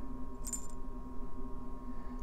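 A steady low hum, with one faint, brief metallic clink about half a second in as a small metal ribbon crimp is handled with jewelry pliers.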